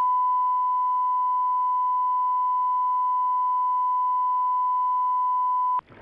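Steady electronic line-up test tone, a single pure pitch held level, cutting off abruptly just before the end.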